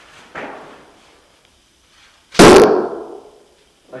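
A yumi (Japanese longbow) shooting an arrow: one loud, sharp crack about two and a half seconds in, dying away over about half a second.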